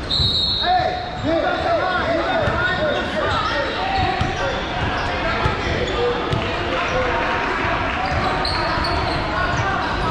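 Indistinct overlapping voices of players and spectators echoing in a large gym, with a basketball bouncing on the hardwood court. A brief high tone sounds at the very start.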